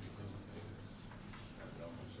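Marker writing on a whiteboard: faint ticks and short scratchy strokes as the formula is written, over a steady low room hum.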